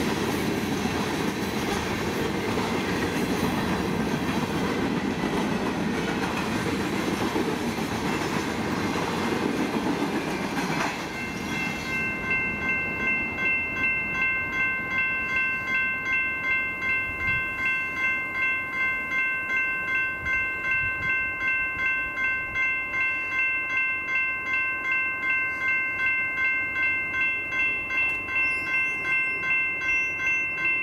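A train passing over the grade crossing, a loud rolling rumble with wheel clatter, until it clears about eleven seconds in. After that the crossing's GS Type 2 electronic bells ring on their own with a steady pulsing tone, about two strokes a second.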